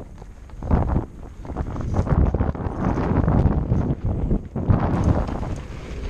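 Wind buffeting the microphone of a camera riding on a mountain bike at speed, mixed with tyre rumble and knocks and rattles of the bike over a dirt trail. It surges briefly about a second in, then stays loud from about two seconds until it eases near the end.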